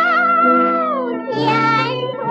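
A 1934 gramophone record of a woman singing in a high, soprano-like voice with instrumental accompaniment. A long high note is held with vibrato and glides down about a second in, and then a new note begins.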